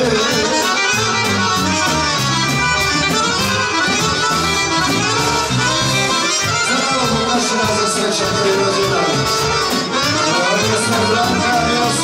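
A chromatic button accordion (Dallapè) plays a fast instrumental solo over the band's steady drum beat, in live Serbian folk band music.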